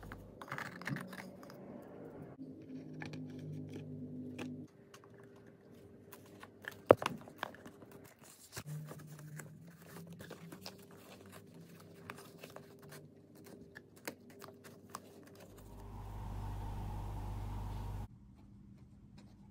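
Small scattered clicks, taps and scrapes of fingers handling a leather watch box and working at its fabric lining, with one sharper click about seven seconds in. A steady low hum comes in near the end.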